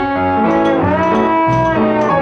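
Live pit orchestra playing an instrumental passage of a show tune, several instruments sounding together.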